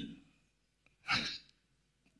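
A man's short audible breath, a sigh-like exhalation about a second in, between pauses in speech.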